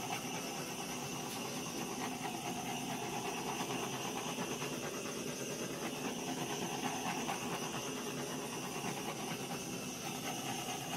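Handheld gas torch burning with a steady hiss as its flame is passed over wet acrylic pour paint to pop air bubbles.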